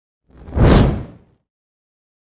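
A single whoosh sound effect from a news logo intro, swelling up and fading away within about a second.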